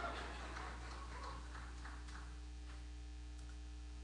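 Quiet room tone through the church sound system: a steady electrical mains hum, with faint scattered ticks during the first two or three seconds.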